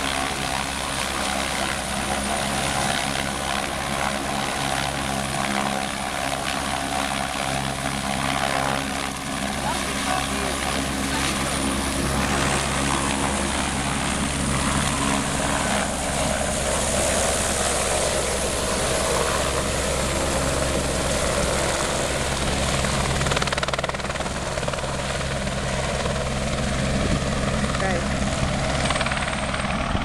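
Helicopter running steadily and close by: a constant low drone of rotor and engine with a thin high whine above it, unchanging in pitch throughout.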